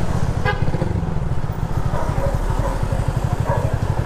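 Motorcycle with an open-pipe exhaust (no muffler) running under way, a loud, rapid low pulsing from the exhaust. A short higher-pitched tone sounds briefly about half a second in.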